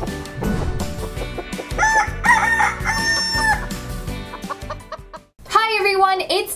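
A rooster crowing, a cock-a-doodle-doo sound effect with a long held final note, about two seconds in, over a short intro music jingle with a beat. The music stops near the end and a woman starts talking.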